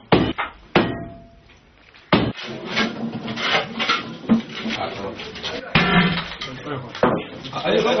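Sledgehammer blows on ceramic floor tiles: three sharp strikes in the first second, another about two seconds in, then several people talking with a few more knocks.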